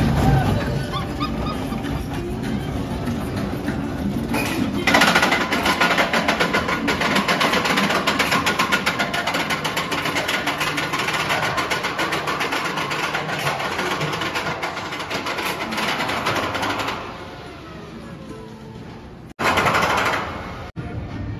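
Spinning steel roller coaster train running along its track: a loud rattling rush that starts abruptly about five seconds in and fades away a few seconds before the end, over background music.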